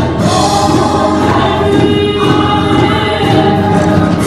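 Gospel song sung by a small group of women together into microphones.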